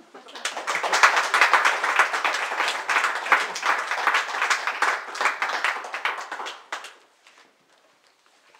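Audience applauding. The clapping builds up within the first second, stays steady and fades out about seven seconds in.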